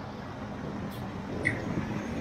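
Steady urban road-traffic noise, an even rumble with a faint low hum and a couple of brief faint clicks.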